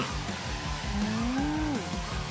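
Background music with a steady beat over the whirring motors of drone-soccer ball drones (quadcopters inside round protective cages) in flight. The motor pitch rises and falls smoothly as they manoeuvre, with the clearest swell about halfway through.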